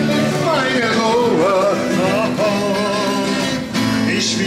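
A folk song: a man singing to a strummed twelve-string acoustic guitar, with a group of voices singing along.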